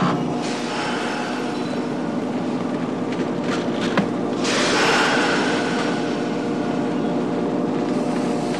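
Subway train standing at the platform with a steady motor hum. A sharp clunk comes about four seconds in, followed by a loud hiss that slowly fades.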